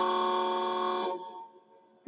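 A horn sounding one steady, unchanging chord that carries on at a lower level and then fades out about a second and a half in.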